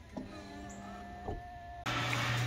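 A man's voice holding a long, drawn-out "All…" at a steady pitch, cut off suddenly near the end. A low steady hum takes its place.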